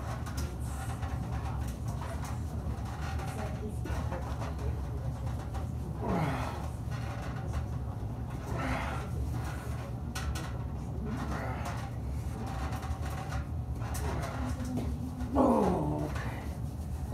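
Men straining while arm wrestling: a few short grunts that fall in pitch, the loudest near the end, over a steady low hum.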